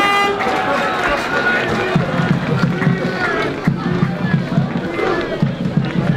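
Football supporters singing and shouting, with a low rhythmic pulsing that starts about two seconds in.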